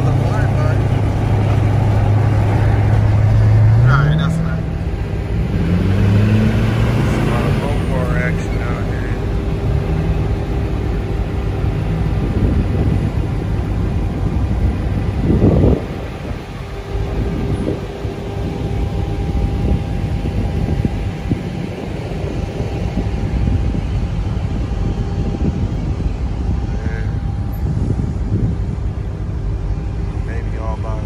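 A car engine heard from inside the cabin while cruising on the highway, a steady low drone that rises in pitch twice, about four and about seven seconds in, as the car accelerates. About halfway through, the sound cuts to the open-air noise of a gas-station lot with vehicles around.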